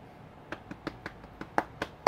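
A quick run of sharp clicks and taps, about seven in a second and a half and growing louder towards the end, from hands working at a shop checkout counter.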